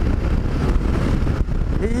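Yamaha XT 660Z Ténéré's single-cylinder engine running at highway cruising speed under heavy wind rumble on the microphone. A man's voice starts speaking near the end.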